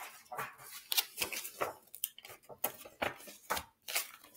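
A paper sticker being peeled off its backing sheet by hand, with the sheet handled: a run of small irregular crackles and clicks.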